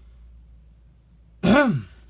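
A man clearing his throat once, a loud voiced rasp about one and a half seconds in, over a faint low room hum.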